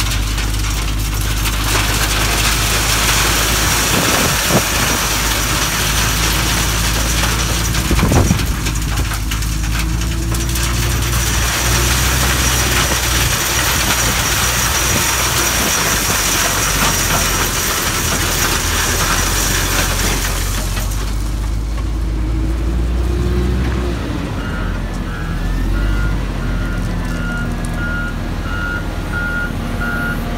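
Crushed concrete gravel pouring from a Kawasaki wheel loader's bucket into a pickup bed, a long steady rush of falling stone with a couple of heavier thuds, over the loader's diesel engine running. The pour stops about two-thirds of the way through, and a reversing beeper sounds near the end.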